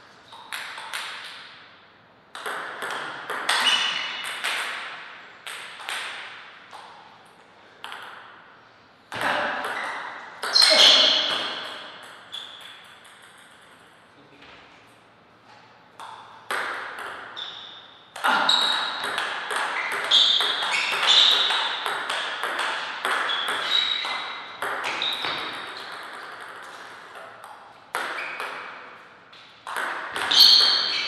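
Table tennis rallies: the ball clicks sharply off the rackets and bounces on the table in quick runs, several points in a row with short pauses between them.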